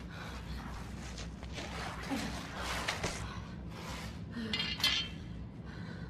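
A woman breathing hard and gasping in fear, over a steady low hum, with a short metallic clink about five seconds in.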